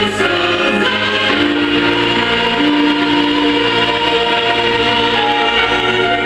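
Recorded gospel song with a choir singing long held notes over a backing track, played from a portable stereo.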